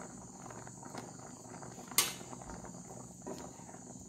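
Wooden spatula stirring carrot payasam in a nonstick pan, with faint scrapes and one sharp knock against the pan about halfway through. A steady high-pitched whine runs underneath.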